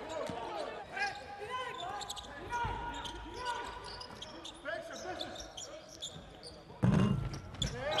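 Court sound from a basketball game: a ball dribbling on the hardwood floor, with players' voices calling out faintly in the hall. A louder thump comes near the end.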